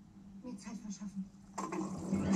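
Film soundtrack playing from a television: faint voices over a steady low hum, turning suddenly louder about a second and a half in.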